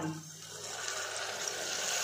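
Half a glass of water poured into a steel pressure cooker onto sautéed onions and spices, a steady splashing pour that grows gradually louder.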